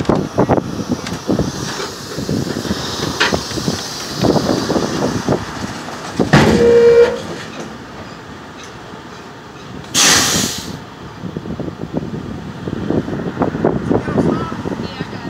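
Semi-trailer tandem axle slide moving under the trailer, with repeated metallic clanks and knocks. There is a short loud squeal about six seconds in and a burst of hiss about ten seconds in.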